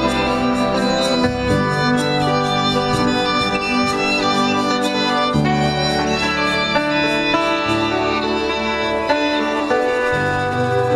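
Live folk band playing an instrumental passage, with the fiddle prominent over acoustic guitar and keyboard. The chords change every two to four seconds.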